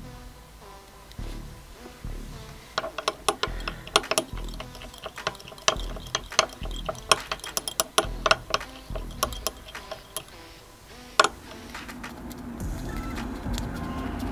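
A stirring stick clinking and scraping against a small glass cup as dye is mixed into liquid silicone lure plastic: a quick, irregular run of clicks for several seconds, then one louder knock. Background music plays underneath.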